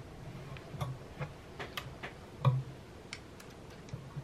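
Irregular light clicks and taps of metal bridge clamps being handled on an acoustic guitar's top, the loudest about two and a half seconds in, some with a low thud under them.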